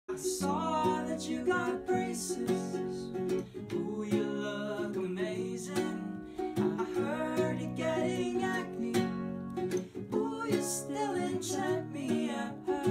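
A young man singing a melody to his own strummed ukulele accompaniment.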